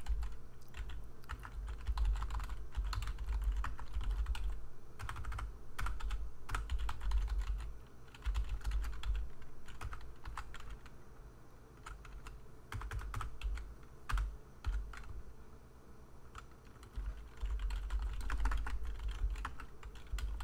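Computer keyboard typing in irregular bursts of keystrokes with short pauses, a low thudding underneath the clicks.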